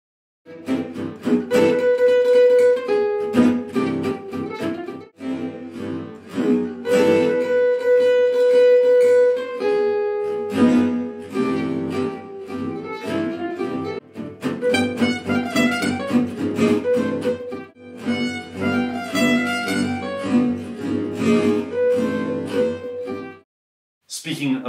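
Gypsy jazz acoustic guitars playing together, a lead line over rhythm guitar accents, replayed in slow motion so the notes sound drawn out and lowered.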